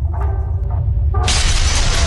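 Logo-animation sound effect: a steady deep bass, then about a second in a loud synthetic shattering crash breaks in suddenly and carries on.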